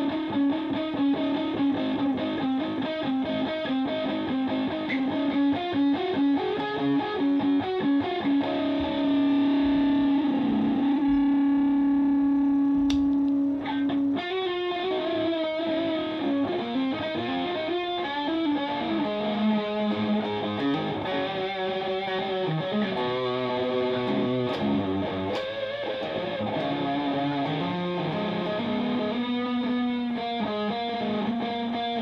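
Distorted electric guitar played through a Rebote 2.5 delay pedal, an analog-voiced digital delay that is switched on: quick lead noodling, then one long held note from about ten to fourteen seconds in, then more runs of notes.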